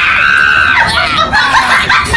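A high-pitched scream held for most of a second and then falling away, followed by short voice-like cries.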